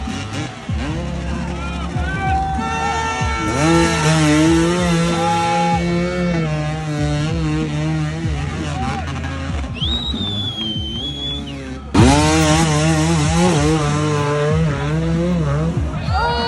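Enduro motorcycle engines revving hard, in long bursts held at high revs, as riders force their bikes up a wooden-step obstacle out of deep mud with the rear wheel spinning.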